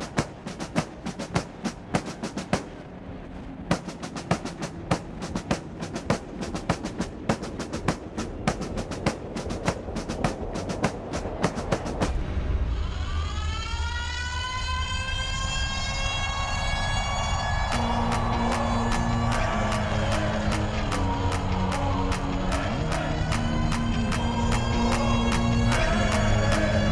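Marching snare drums play a fast cadence for about twelve seconds. They give way to a cinematic music build: a rising synth swell over a low rumble, joined by a steady pulsing beat some six seconds later.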